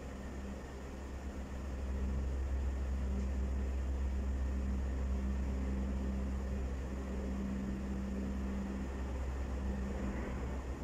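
A steady low machine hum with a held drone, growing a little louder about a second and a half in.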